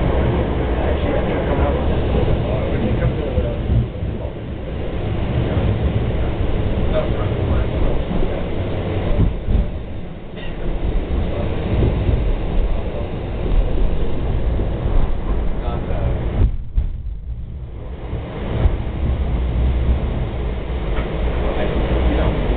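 Portland MAX light rail train running, heard from inside the car: a steady low rumble of the wheels and running gear on the track, easing off briefly a few times, with voices of passengers talking in the background.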